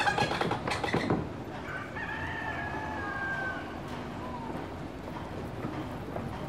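A fowl's crowing call: a long drawn-out note that falls slightly near its end, after a short dense burst of sound in the first second, over a steady low background.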